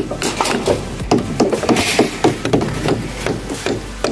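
Irregular hammer blows on wood, several knocks a second, from construction work on timber formwork.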